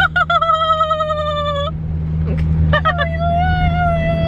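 A woman's voice holding two long, high notes, each a second or more with a slight waver, the second starting a little under a second after the first ends. A steady low car hum runs beneath.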